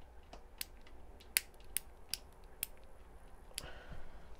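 Plastic switch on an RV ceiling light fixture being clicked by hand, about six sharp clicks, unevenly spaced, in the first two and a half seconds.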